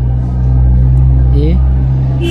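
A loud, steady low drone with no audible change in pitch. A man's voice says a single word about a second and a half in.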